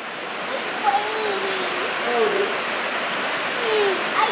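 Steady hiss of heavy rain falling on the roof overhead, growing slightly louder, with faint voices in the background.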